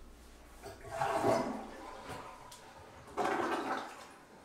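Two short wet, splashing bursts at a bathroom sink, about two seconds apart, each lasting under a second.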